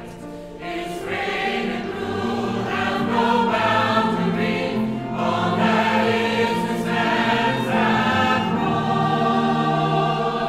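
A mixed church choir of men's and women's voices singing a hymn together, growing louder after about a second.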